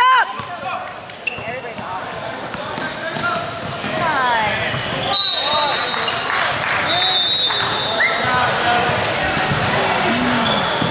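Basketball game play: sneakers squeaking on the gym floor and the ball bouncing, with voices in the background. A referee's whistle sounds as a steady high tone about five seconds in and again about seven seconds in, stopping play.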